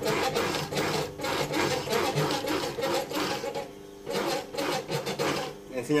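Industrial post-bed sewing machine stitching through a layered upholstery panel, running in a fast, even rhythm of needle strokes. It stops for a moment just past halfway, then runs again for about a second and a half.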